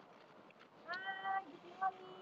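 A short, high-pitched vocal note from a woman, a playful squeal-like sound that bends slightly upward and lasts under half a second, about a second in, then a briefer one near the end, over a faint steady background hubbub.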